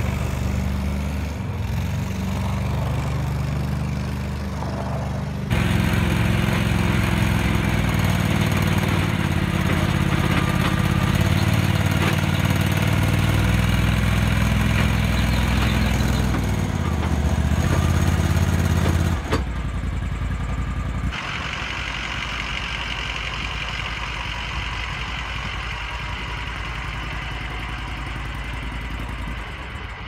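Argo Conquest XTi 8x8 amphibious vehicle's engine running as the machine is driven. It steps up louder about five seconds in, then changes abruptly about two-thirds of the way through to a quieter, steady engine with more hiss.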